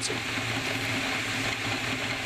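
Military helicopter in flight, its turbine engines and rotor making a steady, even noise as heard from a camera mounted on the airframe.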